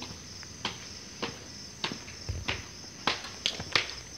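Footsteps on hard stairs, sharp steps that come louder and closer together in the second half, over a steady high chirring of crickets.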